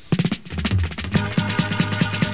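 A reggae record starting on the radio with a quick drum fill. Bass and held chords come in about a second in.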